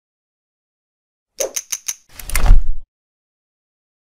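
Intro-animation sound effects: about a second and a half in, four quick sharp clicks, then a loud swoosh with a deep boom lasting under a second.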